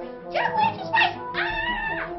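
A young child's very high-pitched, excited voice drawing out "jack" in two squealing calls, over steady background music.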